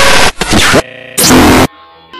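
Harshly distorted noise and music fragments spliced together in rapid cuts: three loud bursts that start and stop abruptly. Near the end it drops to a much quieter stretch of faint steady tones.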